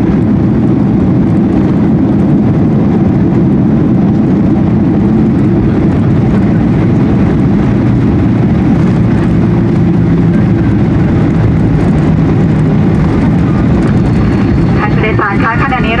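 Boeing 737-800 on its landing rollout, heard from inside the cabin: a loud, steady roar of its CFM56 engines and wheels on the runway, easing slightly lower in pitch as it slows. About a second before the end, a woman starts a Thai arrival announcement over the cabin PA.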